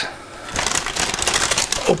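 Paper bag being handled and opened, rustling and crinkling in a dense run of crackles that starts about half a second in.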